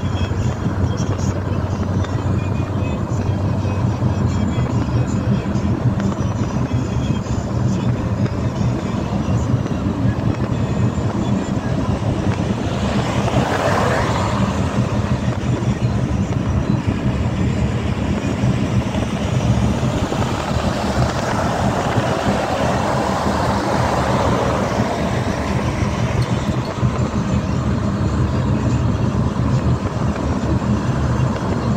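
Steady road and engine noise heard from inside a moving vehicle on a highway. The noise swells briefly near the middle as traffic passes, and again for a few seconds later on.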